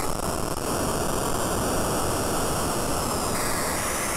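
Patchblocks mini-synthesizer in noise mode, randomly stepping between eight fader-set positions to make a steady synthetic noise. The noise is adjusted from gritty digital noise toward white noise, its texture shifting a little past three seconds in.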